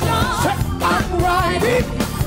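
Live gospel band with a male lead singer singing a wavering, melismatic melody over drums, bass and guitar.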